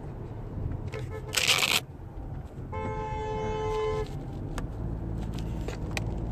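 A car horn sounds once, held for about a second and a quarter, about three seconds in, over the steady low rumble of road noise inside a moving car. A brief rush of noise comes about a second and a half in.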